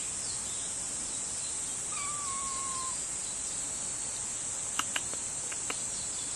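A black kitten gives one thin, drawn-out meow of about a second, sinking slightly in pitch, over a steady high drone of insects. A few short sharp clicks follow near the end.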